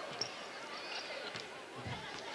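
Faint live sound from a basketball court: crowd chatter in the arena and a basketball bouncing on the hardwood floor.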